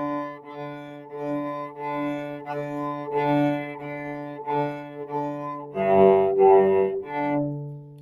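Cello played with the bow: short repeated notes about two a second on a low string, a louder passage of higher notes about six seconds in, then a held low note.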